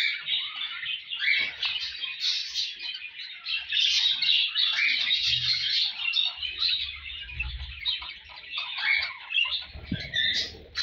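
A flock of caged budgerigars chattering, with a dense, continuous mix of warbles, chirps and short squawks.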